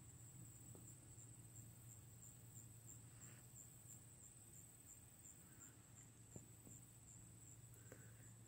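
Near silence: a faint, steady high-pitched insect trill, with a few soft ticks.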